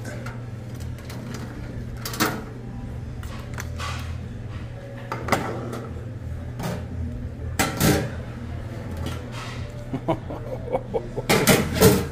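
Stainless steel serving tongs and steam-table pans and lids clinking and clanking as crab legs are picked from a buffet tray: a handful of separate sharp clinks a second or two apart, with a quick cluster of clanks near the end, over a steady low hum.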